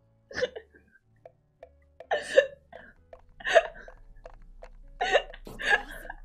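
A woman laughing hard in short, separate bursts with breaths and pauses between them.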